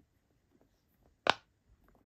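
A single sharp pop about a second in, as a small silicone bubble on a cube-shaped pop-it fidget toy is pressed through.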